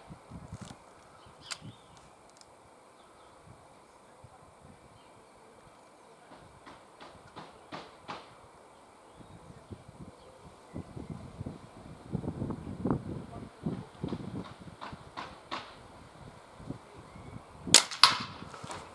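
A Diana Mauser K98 .22 underlever spring-piston air rifle fired once near the end, a single sharp crack. Before it there are only faint small clicks and low rustling.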